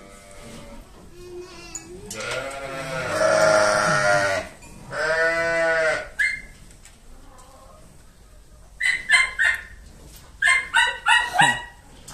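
Sheep and lambs bleating: two long bleats in the middle, then a run of short, quick calls near the end.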